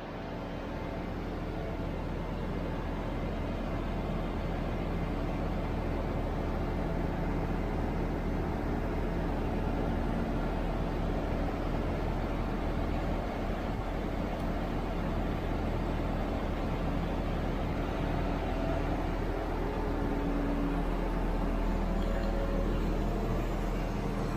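Steady low rumble of a heavy diesel engine running at idle, fading in over the first couple of seconds and holding even.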